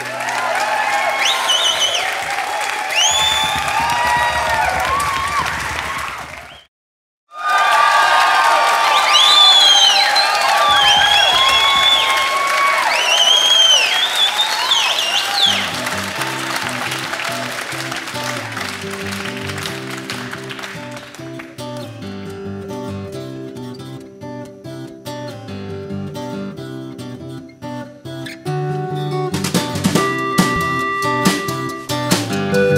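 Audience applauding, with high up-and-down whistles over it; the sound cuts out briefly about seven seconds in. Halfway through, an acoustic guitar begins fingerpicking a steady repeating figure as the applause dies away.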